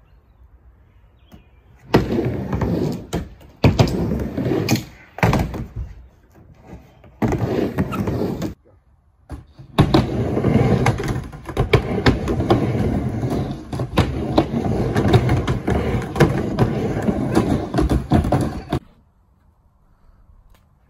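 Skateboard wheels rolling on a plywood half-pipe ramp, with sharp clacks and knocks of the boards hitting the ramp. It comes in runs: a short one about two seconds in, another around seven seconds, and a long stretch from about ten seconds until near the end.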